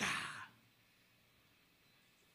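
A man's breathy sigh into a close vocal microphone, lasting about half a second.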